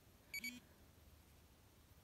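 Polar Grit X sports watch giving a single short high beep about a third of a second in, signalling that the training recording has ended.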